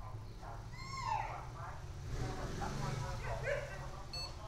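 A dog whimpering and yipping in several short, high, bending whines, over a steady low hum.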